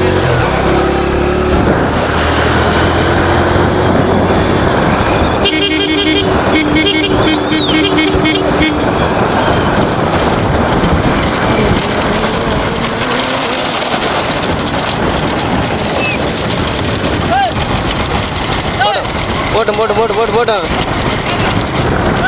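Many motorcycle engines running, with wind noise on the microphone. A vehicle horn honks for about three seconds, starting around five and a half seconds in. Voices shout near the end.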